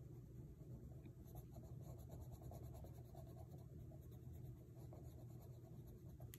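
Faint scratching of a black coloured pencil on sketchbook paper, shading densely along the edge of a drawing.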